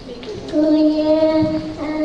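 A child's voice chanting Qur'anic recitation, holding two long steady notes after a brief pause.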